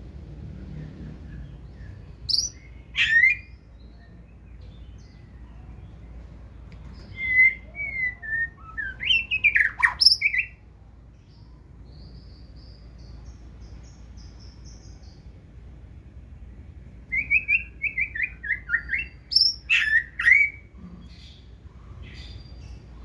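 White-rumped shama singing its wild-type song in three loud bouts of quick, sliding whistled phrases mixed with sharp, harsh notes, with pauses between bouts.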